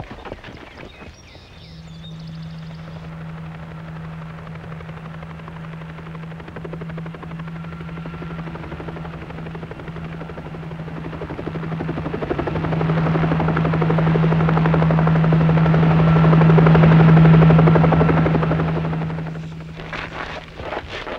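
Helicopter in flight, a steady hum with rapid rotor chop. It grows steadily louder as it comes over, is loudest a little past three quarters of the way through, then fades away quickly.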